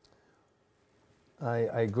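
Near silence of a quiet studio room for about a second and a half, then a man's voice begins speaking.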